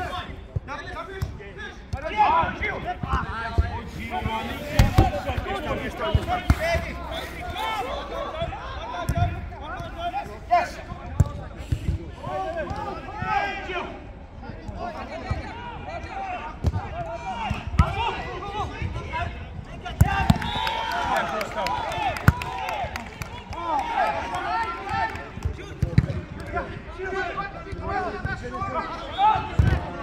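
Players calling and shouting to one another during a five-a-side football game, with dull thuds of the ball being kicked every few seconds and a laugh about seven seconds in.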